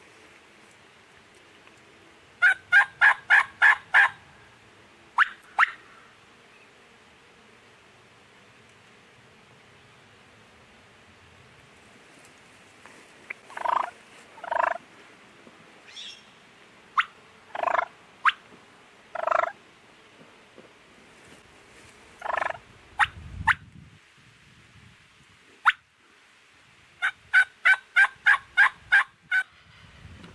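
Wild turkey gobbler gobbling twice, about two and a half seconds in and again near the end, each gobble a fast rattling run of notes. In between, a scatter of shorter yelping calls and a dull thump.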